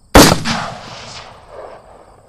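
A single sudden, loud bang that rings out and fades over about a second and a half, with a smaller swell in the tail near the end.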